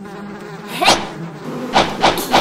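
Cartoon sound effect of a swarm of bees buzzing in a steady drone, with two short rising sounds about a second in and near the end.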